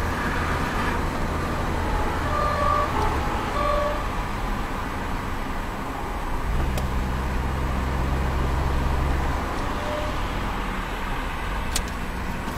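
Inside a car driving at highway speed, heard through a dashcam: a steady low engine hum and tyre and road noise. A little past halfway a stronger, deeper engine drone comes in and lasts about three seconds.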